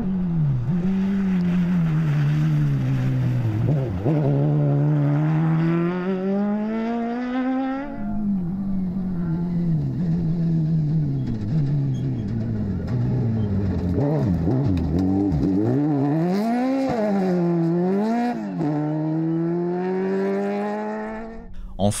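Motorcycle-engined off-road rally buggies at full throttle on a dirt stage. The engine's pitch climbs as the car accelerates and drops at each gear change, with quick throttle lifts and blips. The stretch is heard as two passes, one after the other.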